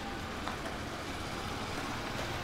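Steady low background rumble, with a faint click about half a second in.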